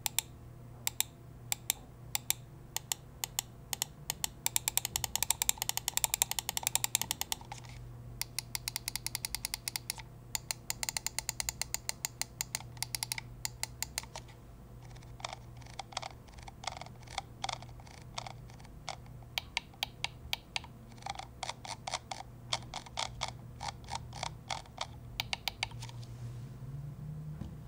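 Ninjutso Sora wireless gaming mouse's buttons clicking: scattered single clicks and several fast runs of rapid clicks, over a low steady hum.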